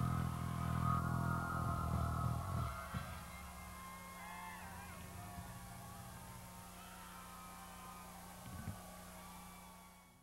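Live concert sound: a low sustained bass note from the PA stops about two and a half seconds in. That leaves a crowd cheering and screaming over a steady hum, which fades out at the end.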